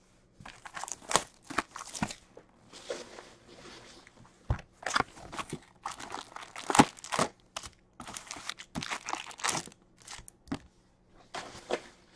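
The shrink-wrap is torn off a 2021-22 Upper Deck Series Two hockey card box, the cardboard box is opened, and its foil card packs are lifted out and stacked. This makes a run of tearing, crinkling rustles with a couple of sharper knocks about four and a half and seven seconds in.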